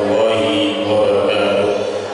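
A man chanting a melodic recitation into a microphone, in long held notes that shift slowly in pitch.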